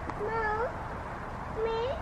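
A small child's voice: two short whiny calls, each rising in pitch at the end.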